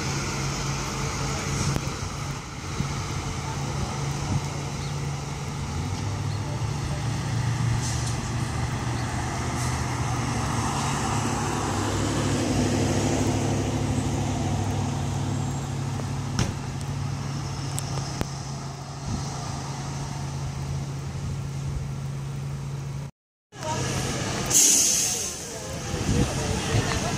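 IC CE school bus engines running steadily as the buses idle and move off, the hum swelling midway. Near the end comes one short, loud hiss of air brakes.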